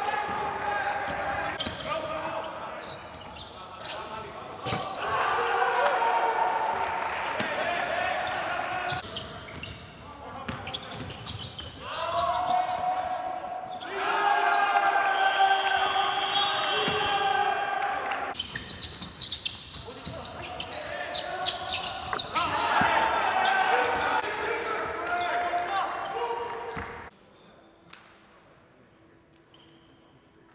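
Live basketball game sound in a large, echoing indoor hall: the ball bouncing on the court and short sharp squeaks and knocks, under voices and several steady pitched sounds held for a few seconds at a time. It drops away suddenly about a second before the end.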